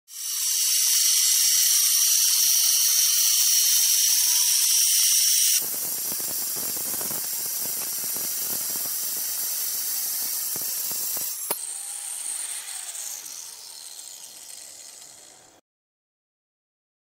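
Angle grinder with a diamond blade cutting porcelain tile. First a loud high-pitched whine for about five seconds, then an abrupt change to a lower, rougher, uneven grinding as the blade runs through the tile. A sharp click comes a little past eleven seconds, and the sound then fades out.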